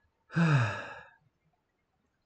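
A person's audible sigh: one breathy, voiced exhale starting about a third of a second in, falling in pitch and fading out within about a second.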